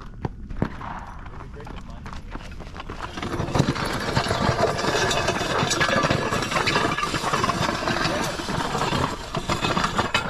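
A plate-loaded sled dragged by rope across loose gravel, scraping and crunching. It grows louder about three seconds in and stays loud until near the end.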